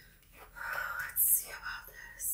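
A woman whispering softly under her breath, with a few short hissing 's' sounds.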